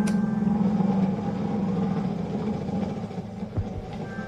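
A lighter clicks once at the start as it is lit. Under it a steady low hum fades away over the next couple of seconds.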